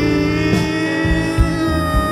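Live blues-rock band playing: a long held note with electric guitar underneath and a few drum hits.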